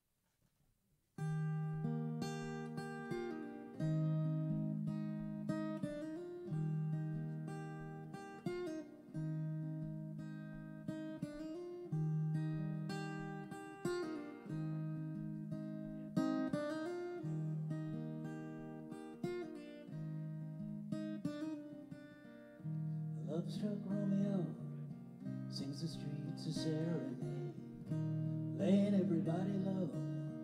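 Acoustic guitar starting about a second in and playing a slow, repeating chord pattern as a song intro. Past the middle, a second melody line with wavering, sliding pitch joins over the guitar.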